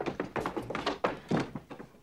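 A quick, irregular run of knocks and thuds from the film's soundtrack, as someone scrambles to hide in a dark room. It thins out toward the end.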